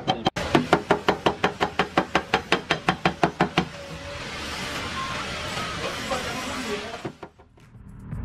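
Small hammer tapping rapidly and evenly on a car's sheet-metal door panel, about seven light taps a second, tapping down the dent area in dry (paintless) dent repair. The taps stop about three and a half seconds in and give way to a building rush of noise that dies away shortly before the end.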